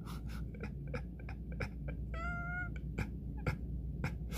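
A single short, high, steady-pitched call, like a cat's meow, lasting under a second about two seconds in, among scattered faint clicks.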